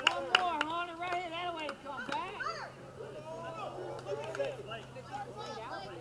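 Several voices chattering among spectators at an outdoor ballgame, with a few sharp clicks in the first two seconds and a steady low hum underneath.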